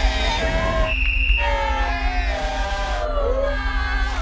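A crowd cheering and shouting excitedly, many voices at once, over background music with a steady low drone.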